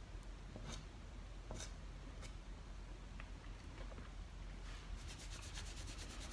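Faint rubbing and brushing of fingers over soft pastel on textured pastel paper, a few light separate strokes, over a low steady hum; near the end a quick run of faint ticks.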